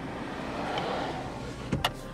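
Steady car-cabin noise from the idling or running car, with a sharp click or two shortly before the end.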